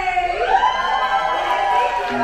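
A woman singing one long wordless note into a microphone. The note slides up in pitch about a third of a second in and is then held.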